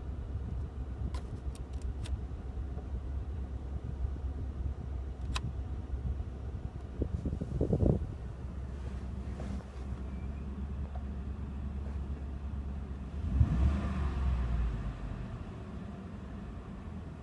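Ford F-150 pickup's engine idling steadily, a low hum heard from inside the cab. A few light clicks come early, and there are two brief louder bumps, one about halfway through and one near the end.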